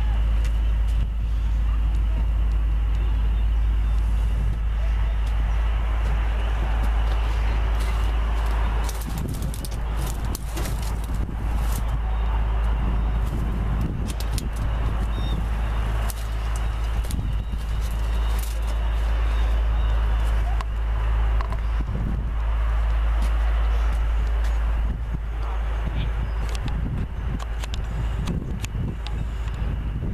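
Outdoor ambience with a steady low rumble of wind on the microphone, faint voices in the background, and scattered clicks.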